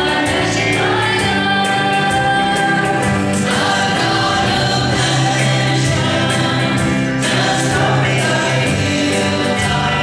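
Live gospel song: a group of singers in harmony over a band of guitars, keyboard and drums, with a steady beat.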